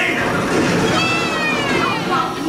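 Loud theme-park ride sound effects over a dense low rumble, with a high squeal about a second in that glides steadily downward.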